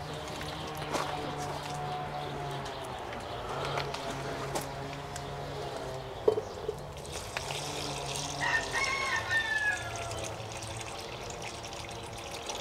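Water pouring from a plastic watering can into a small pot sunk in the soil, a soft, steady trickle. About eight and a half seconds in, a bird call with rising and falling pitch is heard.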